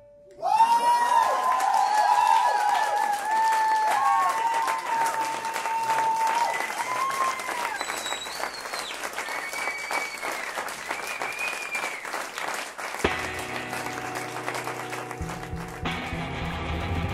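Club audience applauding and cheering, breaking out about half a second in, with long high calls that rise and fall over the clapping. About three seconds before the end, an electric guitar starts the next song under the fading applause, with a bass joining just before the end.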